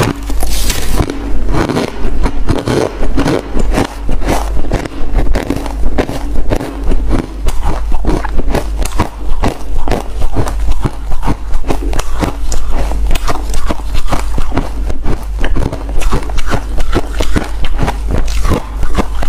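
Chewing and crunching of a block of frozen freezer frost: a bite at the start, then a dense, continuous run of crisp crunches as the ice is chewed.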